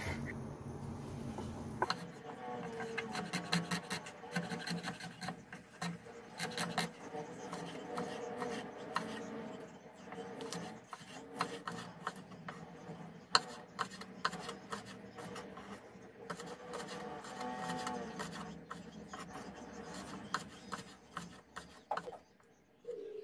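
Kitchen knife chopping on a wooden cutting board, many quick irregular taps, first through fried tofu puffs and then through red chillies, over a steady tone underneath.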